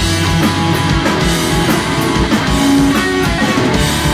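Punk rock band playing live: electric guitars strummed over a steady, driving drum-kit beat.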